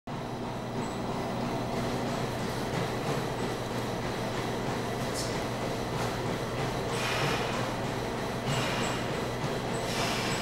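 Steady low drone of room noise, with a few short rustling scrapes as a lifter fastens his lifting belt and steps under a loaded barbell, the last near the end.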